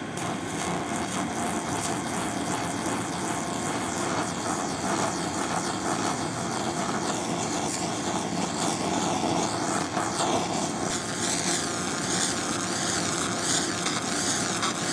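Handheld fiber laser cleaner (SFX BLC-2000, 2000 W) stripping spray paint off wood at low power: a steady hissing, crackling noise of the paint being burned away, over the drone of the machine's fans.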